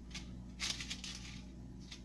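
Parchment paper on a cookie sheet crinkling as pieces of shortbread dough are pressed down onto it by hand: a short rustle about half a second in, with a faint click before it and another near the end, over a low steady hum.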